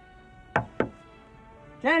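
Two knocks on a door, about a quarter second apart, over a soft sustained music underscore.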